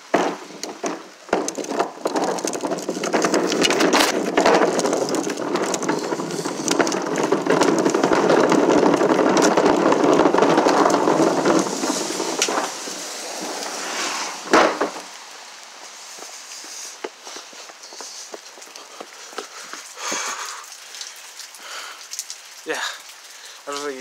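Heavy rain falling around and onto a phone, a dense steady hiss dotted with crackling drop hits. It is loudest through the first half, then falls away about two-thirds of the way in to a lighter patter of scattered drops.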